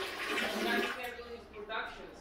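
Water rushing, fading out after about a second, as standing water is emptied out of a front-load washer that would not drain. A brief voice near the end.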